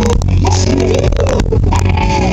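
Live southern rock band playing loudly, with electric guitar notes bending over bass and drums, distorted by an overloaded camcorder microphone.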